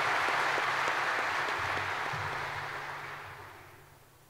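Audience applauding, the clapping dying away over the last second or so.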